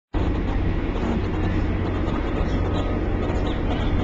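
Ferry engine running with a steady low rumble, under a wash of passengers' voices.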